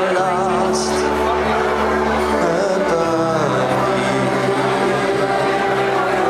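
Amplified live singing into a handheld microphone over instrumental accompaniment, with a wavering sung melody over long held bass notes.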